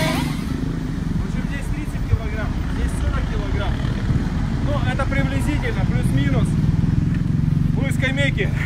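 Low rumble of a motor vehicle's engine running nearby, growing louder near the end.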